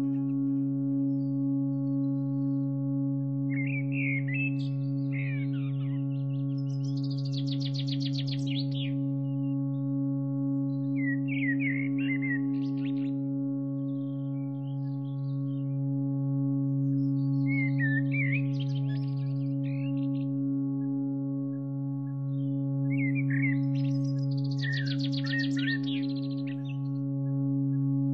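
A steady low drone of held tones, with bird calls laid over it: short chirping phrases and rapid trills that come back every few seconds.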